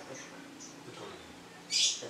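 Caged lovebird giving a few faint high chirps, then one short, harsh, louder call near the end.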